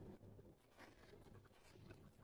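Faint eating sounds of a person chewing pork: soft, irregular wet clicks and crackle.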